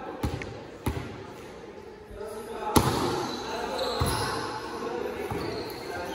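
A volleyball is bounced twice on a concrete gym floor, then struck hard about three seconds in, the loudest hit. Further hits follow as play goes on, with the sound echoing around a large hall.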